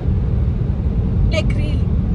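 Steady low road and engine rumble inside a car cabin as it drives at motorway speed, around 150 km/h.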